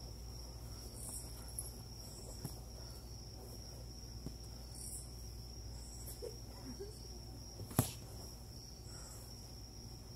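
Crickets trilling steadily in one high, unbroken tone, with a few brief, higher chirps over it. A single sharp thud about three-quarters of the way through is the loudest sound.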